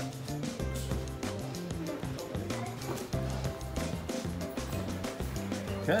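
Background music with a steady beat over a bass line that steps between notes.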